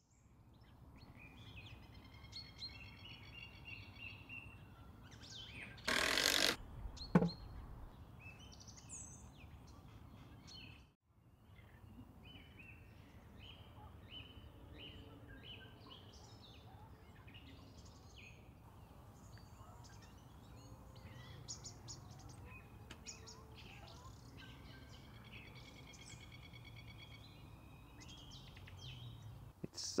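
Small birds chirping and trilling over a faint steady background, in a wordless outdoor stretch. About six seconds in, a brief loud noise is followed by a thud.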